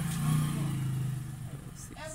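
A motor vehicle's engine droning low in the background, loudest in the first second and then fading away.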